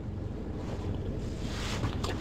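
A low rumbling noise, steady and without pitch, that grows slowly louder, of the kind wind on a microphone makes.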